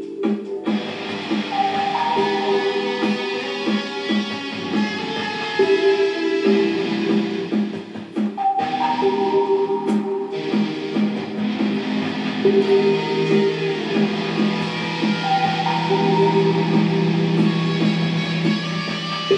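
Electric guitar played live in a freestyle dubstep style over a DJ's backing, the same melodic phrase coming round about every six and a half seconds, with a held low note joining about ten seconds in.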